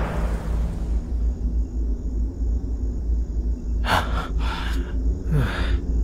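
A low steady rumble under the scene, with a person gasping in short breaths from about four seconds in.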